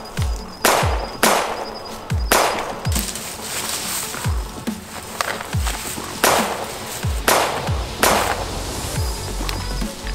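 Tense film-score music: a low boom that falls in pitch repeats about once a second, with swelling noisy hits laid over it.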